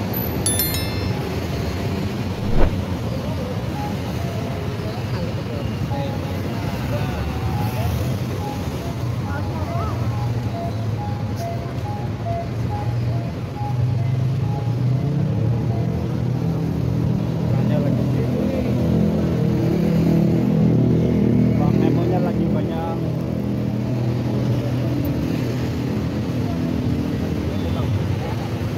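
Busy roadside street-market ambience: traffic and motorbikes running by and people talking in the background, with a sharp knock about two and a half seconds in. From about halfway through, music joins and grows louder.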